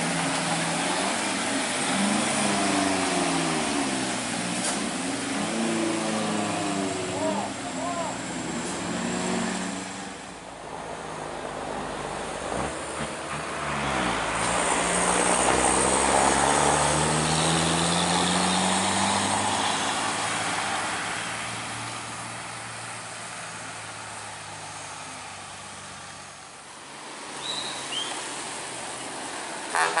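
Traffic passing on a wet road: heavy trucks' diesel engines running under load on a steep climb, over tyre hiss. It is loudest about halfway, where one engine's note rises, and fades toward the end.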